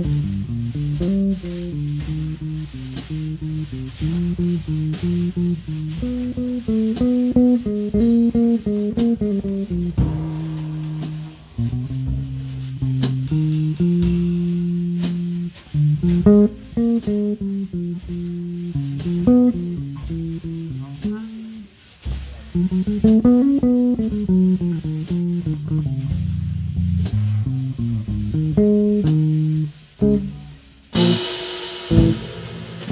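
Live jazz: an electric bass guitar carries the lead, running melodic lines of notes up and down its range, with light drum kit and cymbal accompaniment.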